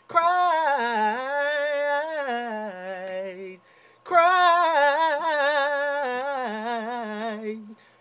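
A man's unaccompanied voice singing two long wordless vocal runs, each wavering and sliding downward in pitch, with a short breath between them about halfway through.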